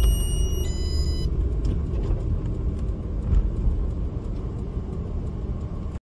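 Car cabin rumble of engine and tyres while driving at about 45 km/h. A thin, steady high whine is heard at the start, shifts slightly in pitch about half a second in and stops after a little over a second.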